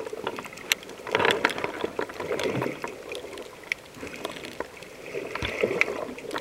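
Water noise picked up by a camera underwater: swells of rushing, bubbling water about a second in and again near the end, with many sharp clicks and crackles scattered throughout.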